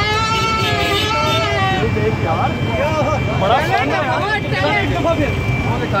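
A plastic stadium horn blown in one long, slightly wavering note that stops about two seconds in, followed by a crowd of men shouting and talking over a steady low rumble.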